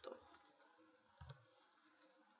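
A few faint computer keyboard keystrokes, a pair of them about a second in, against near silence.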